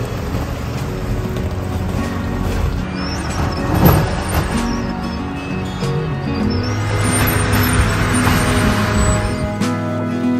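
Background music over a loud, steady rush of typhoon wind and rain, with a stronger surge about four seconds in.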